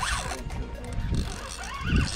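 Penn Battle II 5000 spinning reel being cranked, its gears clicking as line is wound in.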